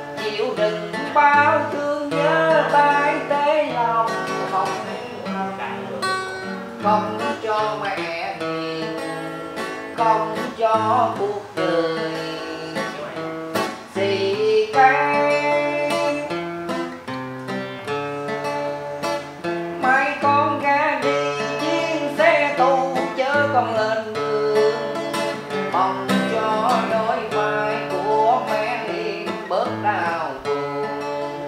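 A man singing with a strummed acoustic guitar accompaniment.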